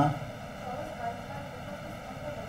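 Steady background hiss on the recording line with a faint, indistinct voice under it, as a student answers at a low level. The teacher's voice cuts off right at the start.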